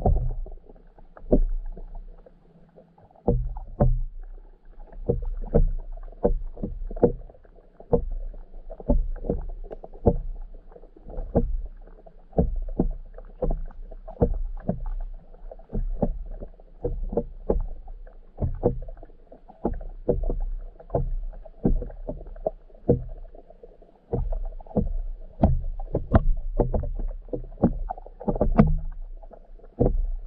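Muffled underwater sound heard through a submerged camera's housing: irregular knocks and low thumps, about one or two a second, over a faint steady hum.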